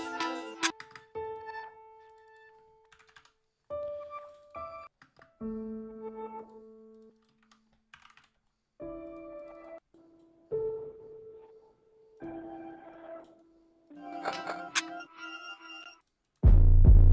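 Snippets of an unfinished electronic beat played back from music software, each starting and cutting off abruptly every second or two. The snippets carry piano-like chords and notes.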